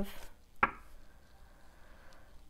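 Tarot card set down on the table with a single sharp tap a little over half a second in.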